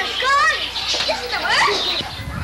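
Children's high-pitched voices calling and squealing while they play, in short wavering, gliding cries.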